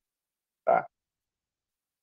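Silence apart from one short word spoken by a man about a second in.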